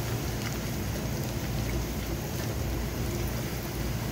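Chopped ginger and garlic sizzling steadily in hot cooking oil for a dal tadka, with faint scattered crackles and a low steady rumble underneath.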